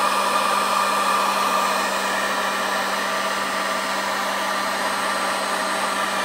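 Paint-stripper heat gun running steadily on its low setting: a constant rush of blown air with a steady hum and whine from its fan motor.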